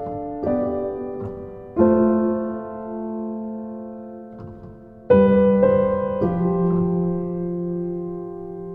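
A slow solo piano recording: sustained chords struck a second or more apart and left to ring and fade, with a quieter stretch before the loudest chord about five seconds in.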